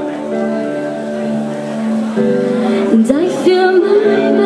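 Live indie-pop band playing: electric guitars and bass guitar holding sustained chords over drums. About three seconds in a woman's voice comes in, rising in pitch.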